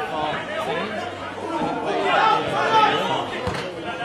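Indistinct chatter: several voices talking over one another close to the microphone.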